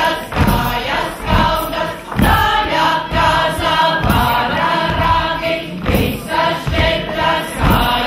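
A group of mixed voices singing a folk song together, accompanied by fiddle and accordion, over a steady beat of low thuds about every half second or so.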